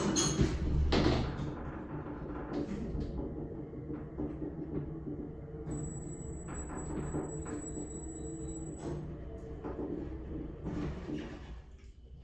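Elevator doors sliding shut and closing with a soft knock in the first second. A steady low hum follows with faint music over it, and a thin high whine runs for about three seconds midway.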